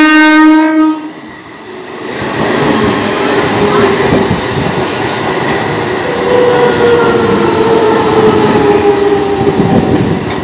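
Indian Railways EMU local train's horn ending a single loud blast about a second in, then the train running close past, wheels rattling over the rails, with a whine that slowly falls in pitch as it slows into the station.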